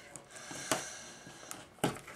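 Faint rustling of small cardstock pieces being handled on a craft mat, with two light taps.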